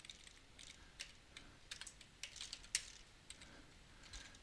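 Faint computer keyboard typing: irregular, scattered key clicks with short pauses between them.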